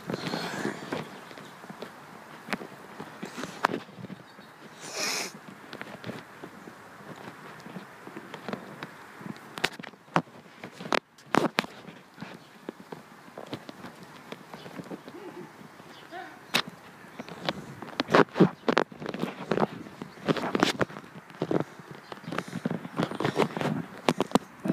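Scattered sharp clicks and knocks from a handheld camera being moved about, thickest in the last third, over a steady outdoor background hiss, with faint voices now and then.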